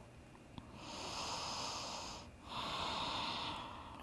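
A person breathing deeply and audibly close to the microphone: two long, airy breaths, the first about a second in and the second just after the midpoint.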